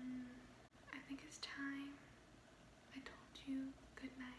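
A woman whispering and speaking softly in ASMR style, in short phrases with pauses.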